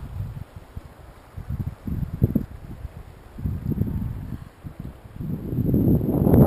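Wind buffeting the camera's microphone in uneven gusts, growing louder toward the end.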